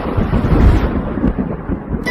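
Thunder rumbling over steady heavy rain, a storm sound effect between the song's lines, its hiss thinning out toward the end.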